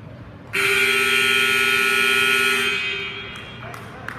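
Gymnasium scoreboard buzzer sounding one long, steady blast of about two seconds, ringing off the gym walls as it dies away; it marks the end of a wrestling period.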